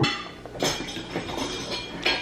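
A metal fork scraping and clinking against a ceramic dinner plate while picking up food.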